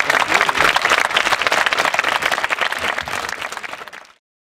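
Audience applauding, a dense patter of many hands clapping that fades away over the last half-second.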